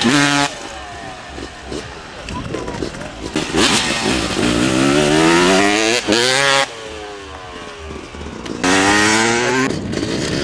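Motocross bike engines revving hard, their pitch climbing steeply on the run-up to a jump ramp. This happens several times, each rise breaking off abruptly.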